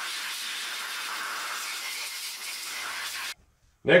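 Compressed-air blow gun hissing steadily as it blows brake cleaner and oil out of an open differential carrier, then cutting off abruptly about three seconds in.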